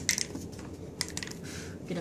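A person blowing at a birthday-cake candle in short, soft puffs of breath, with a few sharp clicks about a tenth of a second in and again about a second in.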